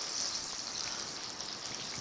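Hot oil sizzling steadily in a karahi as besan-battered eggs deep-fry: an even, fairly quiet hiss.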